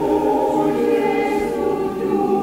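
Background choral music: a choir holding one long, steady chord.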